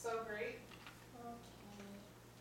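A young girl's soft voice: a short phrase near the start, then quieter voiced sounds.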